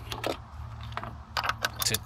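Metal clicks and clinks of a ratchet and socket being handled and fitted onto the oil filter housing cap of the engine, a few scattered clicks and then a quicker cluster in the second half.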